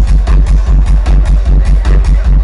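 Loud electronic dance music from a DJ set over the arena sound system, driven by a heavy kick drum pounding about three and a half times a second.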